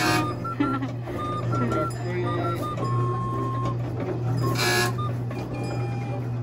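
Coin-operated fire-engine kiddie ride running: a steady motor hum under a simple electronic tune of short high beeps, with one note held longer near the middle.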